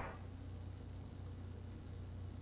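Faint background noise in a pause: a thin, steady high-pitched whine over a low hum and light hiss.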